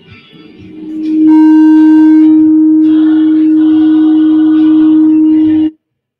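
Sound-system feedback: a single loud, steady tone swells up within about a second over soft music, holds for about four seconds, then cuts off suddenly.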